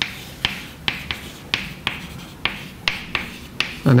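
Chalk writing on a blackboard: about ten sharp taps as the chalk strikes the board, a couple a second, with faint scratching between the strokes.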